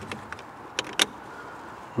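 Spring-loaded red battery clamp of a CXY T18 jump starter being fitted onto a car's 12-volt battery positive terminal: several sharp clicks and snaps, the loudest about a second in.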